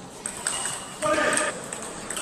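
Table tennis rally: the ball clicks sharply off the rackets and table several times, with a short pitched squeak about a second in.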